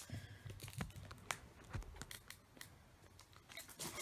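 Faint handling noises of a foil trading-card booster pack: light crinkling with scattered small clicks and taps.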